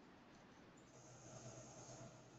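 Near silence: faint call-audio room tone with a low hum, and a faint hiss that rises about a second in.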